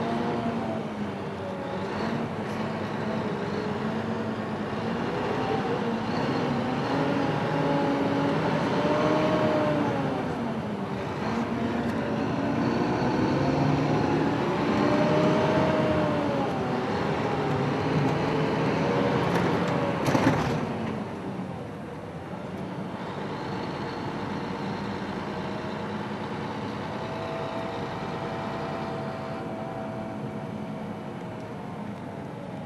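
Engine of the vehicle carrying the camera, heard from inside, its pitch rising and falling slowly as it speeds up and slows in city traffic. About twenty seconds in there is a sharp crack, after which the engine runs quieter and steadier.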